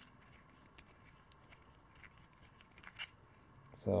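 Faint metallic clicks and scraping as a small thread-deburring tool is turned by hand on the cut, threaded end of a metal carburetor throttle elbow, with one sharper metallic tick about three seconds in.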